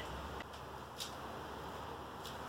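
Quiet workshop room noise with two light clicks, a small one about half a second in and a sharper one about a second in, as a hot glue gun is handled and set down on a cardboard-covered table.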